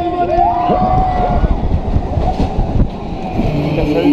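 A long, drawn-out voice call in the first second and a half, then wind rushing over the microphone as the drop-tower gondola descends.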